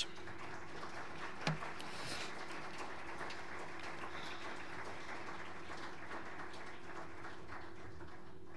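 Audience applauding with steady, dense clapping.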